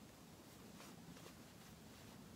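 Near silence, with a few faint soft rustles and ticks of cotton fabric scraps and pins being handled.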